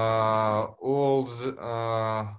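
A man's voice holding long vowels at a steady low pitch, in two stretches with a brief hiss between them.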